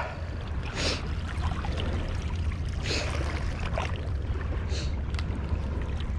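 Steady rush of churning river water at the bank under a low wind rumble on the microphone, with a few brief rustles about one, three and five seconds in.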